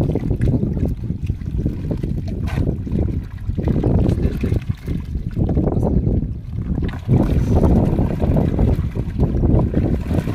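Heavy wind rumble on the microphone, swelling and dipping, over water sloshing and trickling as a mesh net trap full of small fish is shaken out into a bamboo basket in shallow water.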